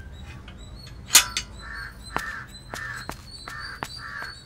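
Crows cawing in a steady run of short, harsh calls about every half second in the second half, with a sharp click about a second in.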